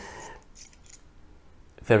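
Screw cap of a green aluminium Kaweco Liliput fountain pen being unscrewed by hand: a faint scraping of metal threads. A man says "very" near the end.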